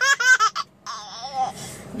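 Baby laughing: a quick run of short, high-pitched bursts of giggles, then much quieter.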